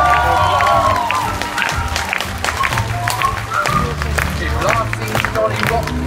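Concert audience applauding, with many claps, over music with a steady bass line. A voice is heard in the first second.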